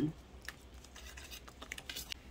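Wire whisk stirring cake batter in a stainless steel mixing bowl, its wires ticking faintly and irregularly against the metal.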